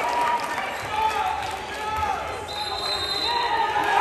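Indoor volleyball gym between rallies: spectators and players chattering, with a ball bouncing on the hardwood floor. A short, high steady whistle sounds about two and a half seconds in.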